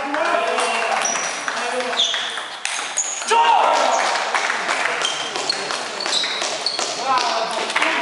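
Table tennis rally: the celluloid ball clicks sharply off rubber bats and the table in quick succession, with short high squeaks of players' shoes on the court floor. A voice calls out about three seconds in.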